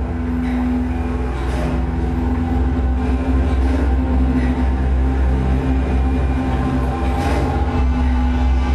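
Short-film soundtrack music: a steady low drone with a held mid tone, played over a screening room's speakers.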